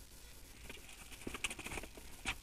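Faint rustling of thin paper pages with a few light ticks, typical of leafing through a Bible to find a verse.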